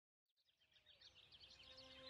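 Faint fade-in of an ambient intro track: a flurry of quick, high bird-like chirps, joined about halfway through by low held tones.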